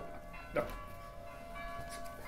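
Church bells ringing faintly, a cluster of steady overlapping tones.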